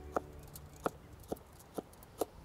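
Kitchen knife cutting a red chili pepper on a cutting board: four short, sharp taps of the blade on the board, about half a second apart.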